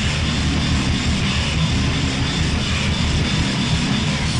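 Harsh noise music: a dense, unbroken wall of distorted noise with a heavy low rumble, with no clear beat or melody.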